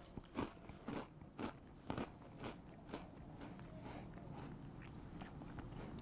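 Faint crunching of a jumbo Apple Jacks cereal piece being chewed, about two crunches a second, dying away after a couple of seconds.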